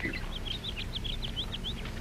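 A small bird chirping in a quick run of about a dozen short, high chirps, over a faint steady low hum.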